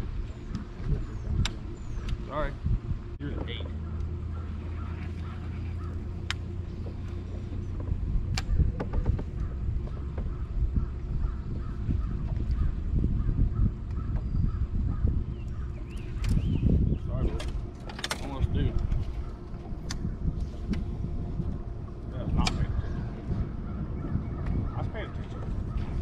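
Steady low electric hum of a bass boat's bow-mounted trolling motor, a little stronger for a few seconds early on, over low wind rumble. Sharp clicks and taps of fishing reels and rods come at intervals as the anglers cast and retrieve.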